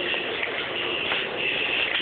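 Shuffling and rustling handling noise close to the microphone as dolls are moved about, with a few small clicks.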